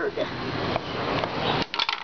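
A skateboard handled over brick paving: a rustling hiss that builds, then a quick rattle of clicks near the end.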